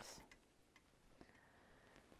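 Near silence: room tone with a few faint ticks and a faint steady high tone.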